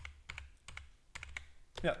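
Computer keyboard typing: a quick, irregular run of about a dozen keystrokes as text is entered. A short spoken word comes near the end.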